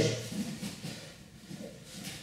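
Mostly quiet room tone in a large hall after a man's voice trails off at the start, with a couple of faint, brief voices in the lull.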